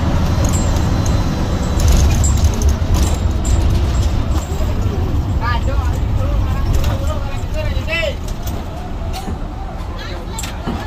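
Hino AK8 bus's diesel engine making a steady deep drone, heard from inside the cabin as the bus rolls slowly into a bus terminal, with light rattles from the cabin. The drone eases off somewhat near the end. Two short voices call out in the second half.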